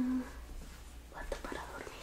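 A woman whispering softly close to the microphone, with a brief steady hum right at the start.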